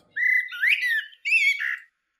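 Birdsong from a dawn-chorus ambience sample being previewed: two short phrases of whistled, gliding chirps, the second cutting off abruptly near the end.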